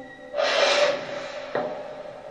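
Horror-film soundtrack: an eerie sustained drone, then about half a second in a sudden harsh rasping scrape with a held tone that fades over the next two seconds, and a single sharp click near the middle.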